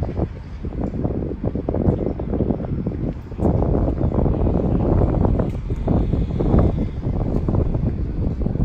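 Wind buffeting the microphone in uneven gusts, louder from about a third of the way in.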